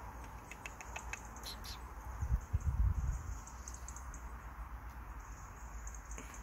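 A few faint, short high chirps and ticks from a young Eurasian blue tit perched on a hand, with a low rumble about two and a half seconds in.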